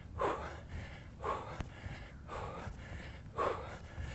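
A man's hard, short breaths, four of them about a second apart, from the exertion of repeated jump squats.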